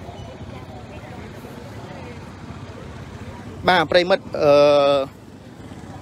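Steady low background noise with faint distant voices for the first few seconds. Then a voice speaks loudly close to the microphone, stretching one word out for over half a second.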